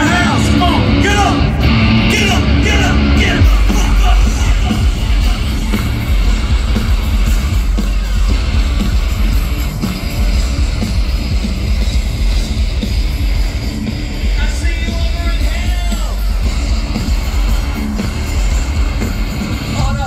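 Nu-metal band playing loudly through a stadium PA, heard from within the crowd, with a heavy bass coming in about three and a half seconds in. Shouted vocals ride over the band at the start and again briefly near the three-quarter mark.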